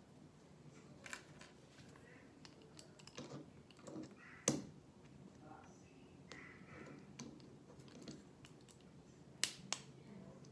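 Plastic Lego bricks clicking and tapping as small pieces are handled and pressed together: a few scattered clicks, the sharpest about four and a half seconds in and two close together near the end.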